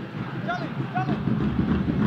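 Field-level football stadium ambience: a steady low rumble, with two brief distant shouts from players on the pitch about half a second and a second in.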